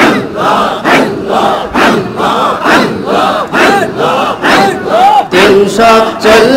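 A large crowd of men chanting zikir together in loud rhythmic unison, about two chanted beats a second, the many voices rising and falling together.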